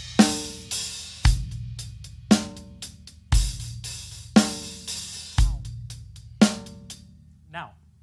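DW drum kit with Meinl cymbals played in a slow, steady beat of about one stroke a second: bass drum with a cymbal crash about every two seconds and a ringing snare or tom stroke between them. The playing stops about six and a half seconds in and the last hit rings down.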